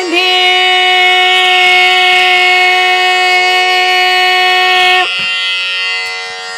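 Carnatic music in raga Kalyani: one long note held steady for about five seconds, then released, leaving a softer steady drone underneath.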